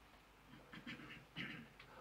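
Near silence: room tone with a few faint, short sounds in the second half.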